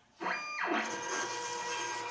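Intermec PC23d direct thermal desktop printer printing and feeding out a wristband. Its motor starts a moment in with a quick rise in pitch, then runs at a steady whine.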